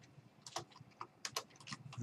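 Computer keyboard keys clicking as someone types: a quiet run of about eight irregular keystrokes, most of them in the second half.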